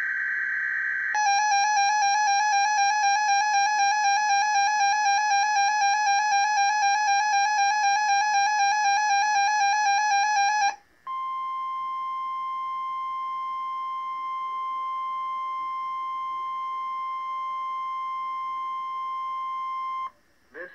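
NOAA Weather Radio emergency alert signalling: the end of a SAME digital header burst, then about nine and a half seconds of a rapidly warbling electronic alert tone from the weather radio receiver. After a brief break it is followed by the steady 1050 Hz Warning Alarm Tone held for about nine seconds, ahead of a required monthly test of the Emergency Alert System.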